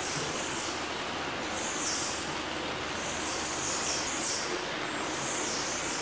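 Water running over a small rock ledge into a pool makes a steady rushing noise, with brighter high-pitched patches coming and going every second or so.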